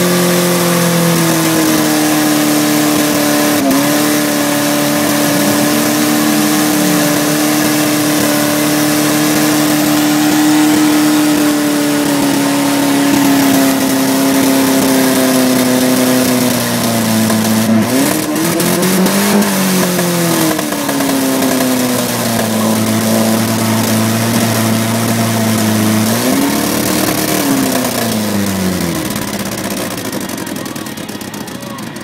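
Ford Escort's engine held at high revs during a burnout, over the noise of the spinning tyres. In the second half the revs twice drop and swing back up, and they fall away near the end.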